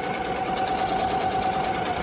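Ricoma EM-1010 ten-needle commercial embroidery machine stitching a design onto a hooped shirt, running steadily with a fast, even stitching rhythm over a held hum.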